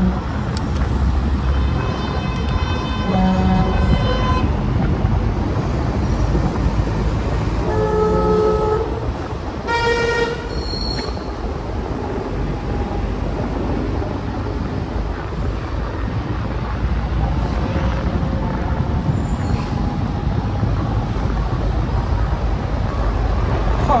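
Steady traffic and road noise heard from a moving bicycle, broken by several short vehicle horn toots about two to four seconds in and again around eight to eleven seconds in.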